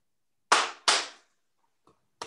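Two sharp hand claps about 0.4 s apart, starting about half a second in: the paired claps of an aikido bow-out ritual, heard over a video call.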